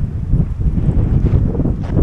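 Wind buffeting the microphone: a loud, uneven low rumble that rises and falls.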